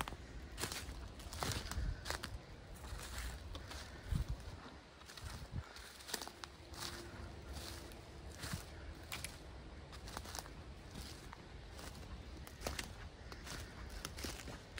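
Footsteps of a person walking through dry leaf litter and twigs on a forest floor, a crunch at a steady pace of roughly two steps a second.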